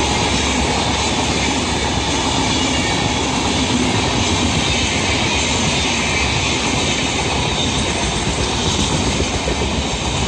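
Coaches of the Akal Takht superfast express passing at speed close by: a loud, steady rush of wheels running on the rails.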